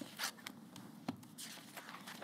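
Sheets of printed paper rustling and being turned over as they are handled, in a few short bursts.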